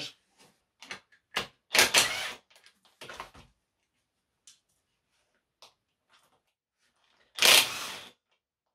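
A cordless impact driver with a hex bit running in two short loud bursts, about two seconds in and again near the end, loosening the plugs of a BMW rear differential casing. Light clicks and knocks from the tool and the casing being handled come between the bursts.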